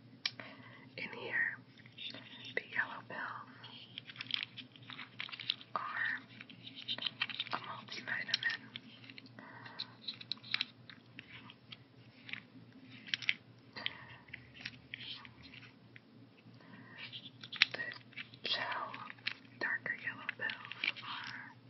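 Fingers handling a clear plastic weekly pill organizer close to the microphone: irregular clicks and taps on its compartment lids and body, with soft whispering at times.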